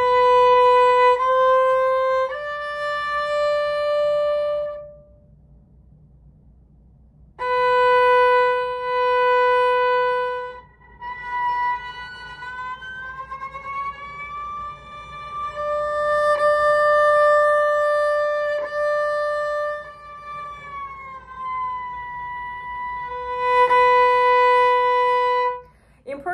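Solo violin played with the bow: three notes stepping up from B to D, a pause of about two seconds, then a held B that slides slowly and audibly up to D on the first finger, a shift from first to third position, holds the D, and slides back down to B.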